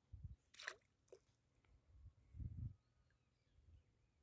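Near silence broken by a few faint low thumps and two small splashes of water, about half a second and a second in, as someone wades in shallow water.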